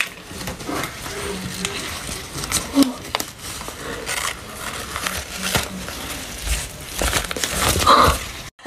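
Rubber SFX prosthetic mask and wig being peeled off the face and head after loosening with adhesive remover, a crinkling, rustling tear with many small crackles.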